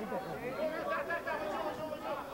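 Several voices talking over one another in a continuous murmur of chatter, with no single speaker standing out.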